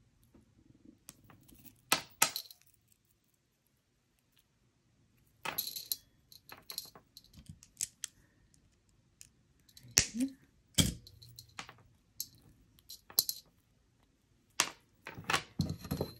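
Gold-tone paperclip-link jewelry chain clinking and jingling in the fingers in short, scattered bursts. There are small metallic clicks as a link is worked open to split the chain in half.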